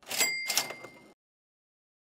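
Cash-register "cha-ching" sound effect: two quick clattering hits with a bright bell ringing over them, cutting off suddenly about a second in.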